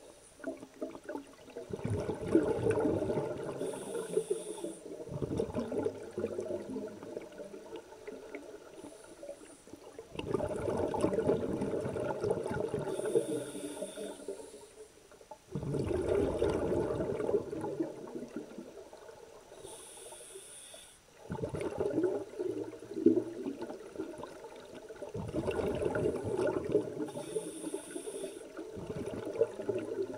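Scuba regulator breathing recorded underwater: a gurgling rush of exhaled bubbles every few seconds, with a short hiss from the regulator on each breath in between.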